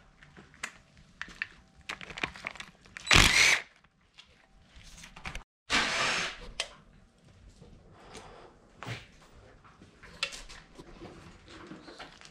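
Scattered clinks and knocks of hand tools working on a bare engine block, with two short, louder rushing noises about three and six seconds in.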